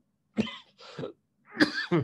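A man coughing and clearing his throat in about three short, abrupt bursts.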